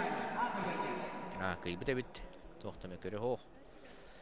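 Men's voices give two short shouts over the noise of a sports hall, then drop to quieter hall noise about three and a half seconds in.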